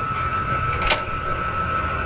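ATM check-deposit mechanism running with a steady high whine as it takes in and processes a check, with one sharp click about a second in, over a low background rumble.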